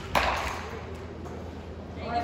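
A single sharp knock just after the start, with a short echoing decay, over a low steady hum.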